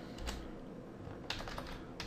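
Faint keystrokes on a computer keyboard: a couple of separate taps, then a quicker run of several keys past the middle.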